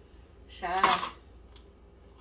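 Dishes and cutlery clattering at a kitchen sink, in one short loud burst about half a second in.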